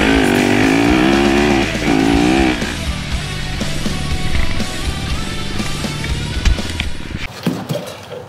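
Rock background music over a Yamaha YZ250F four-stroke single-cylinder dirt bike engine, revving up and down under throttle in the first couple of seconds. Both drop away shortly before the end.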